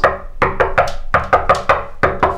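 Rapid, urgent knocking on a wooden front door, sharp knocks in quick bursts of three or four, each with a short ring.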